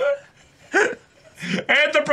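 A short laughing vocal burst just before a second in, then a voice speaking near the end.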